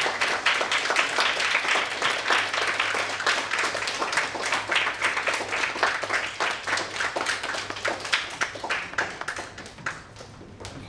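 Audience applauding: dense clapping that tapers off near the end.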